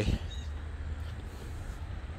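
Steady low rumble of wind and handling noise on a handheld camera's microphone while walking outdoors.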